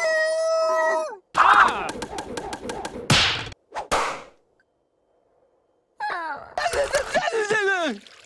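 Cartoon soundtrack of squeaky creature vocalizations and sound effects. A held nasal note lasts about a second, then come a run of clicks and quick hits. After a short silence in the middle, warbling, sliding cartoon voices chatter.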